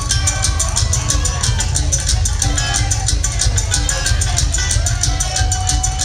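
Fast live bluegrass from a string band: a mandolin and guitar picked at a quick, even pulse over a deep, thumping one-string gas-tank bass.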